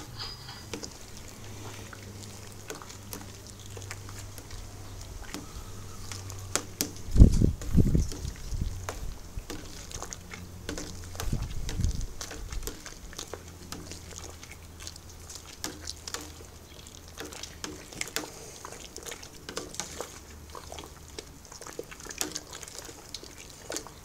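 A long spoon stirring hot wort round in a large aluminium brew kettle to start a whirlpool at flame-out. The liquid sloshes and splashes, with scattered clicks from the spoon, over a steady low hum. A few heavier low thumps come about 7 seconds in and again about 12 seconds in.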